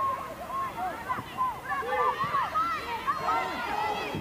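Soccer players' voices calling out across the field, several short high shouts overlapping one another, picked up by the field microphones.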